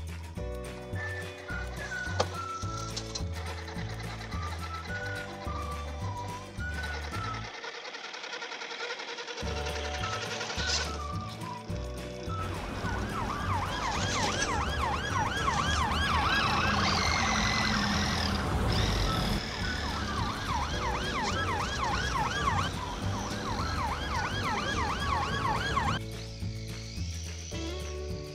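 Background music with a steady bass beat; from about halfway a police siren joins in, yelping up and down rapidly, about three cycles a second.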